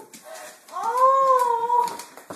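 A long, high, wavering cry that rises, holds and then falls away, starting a little over half a second in.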